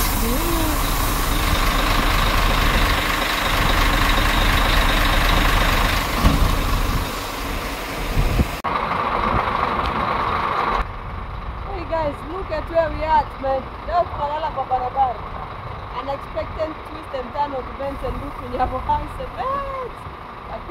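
Idling trucks and buses in a stalled traffic jam. A loud, steady noise lasts about the first eight seconds, then drops off suddenly to a quieter hum with people's voices chattering in the background.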